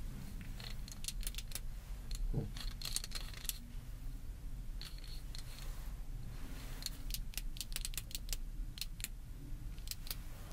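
Close-up clicks, taps and light metallic rattles from fingers handling and twisting a small metal instrument, scattered irregularly over a steady low rumble.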